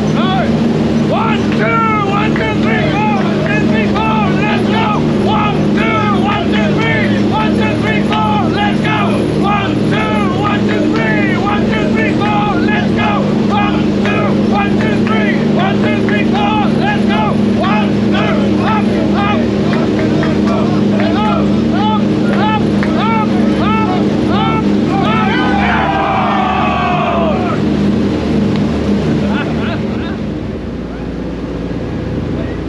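Steady loud drone of a C-47 Dakota's twin radial engines heard inside the cabin, with the open jump door letting in air noise. A higher sound rises and falls in pitch several times a second over the drone, with a falling glide near the end.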